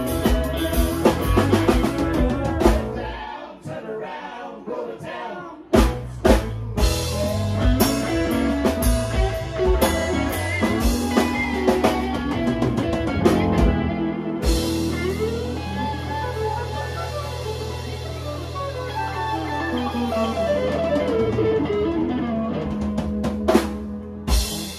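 Live band playing an instrumental passage on electric guitar, keyboard and drum kit. The drums drop out briefly after a few seconds and come back in with two hard hits. About midway they stop, leaving a held chord under falling keyboard runs, and a final hit comes near the end.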